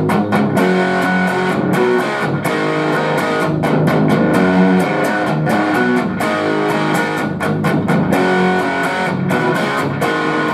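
Ibanez S561 electric guitar played through a Fender Blues Jr III amp: chords and riffs picked and strummed, with many quick pick strokes.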